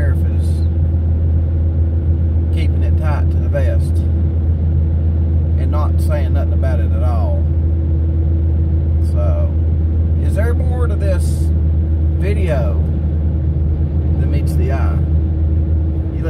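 Steady low road and engine drone inside the cabin of a moving vehicle, the loudest sound throughout, with a man's voice speaking in short stretches over it.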